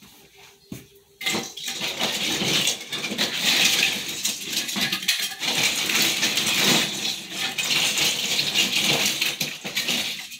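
Christmas ornaments clinking and rustling together as they are rummaged through in their storage box, starting about a second in and going on as a busy, loud clatter.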